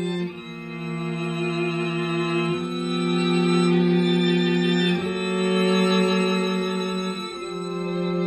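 String quartet of two violins, viola and cello playing slow, sustained bowed chords that change about every two and a half seconds, each one swelling and then fading.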